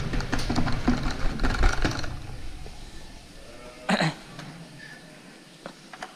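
Feed (küspe) poured from a plastic bucket into a metal sheep trough, a dense rattle and rustle for about two seconds that then dies down to light handling noise. A brief call sounds about four seconds in.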